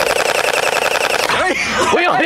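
Electric gel blaster firing a full-auto burst: a fast, even buzzing rattle that lasts about a second and a half and then stops.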